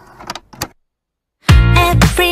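Pop song recording with a break: a soft held backing sound stops, two short sounds follow, then about a second of silence. About one and a half seconds in, the full track comes back loud with deep bass and singing.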